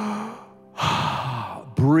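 A man's long audible breath into a handheld microphone, a sigh-like rush of air lasting about a second.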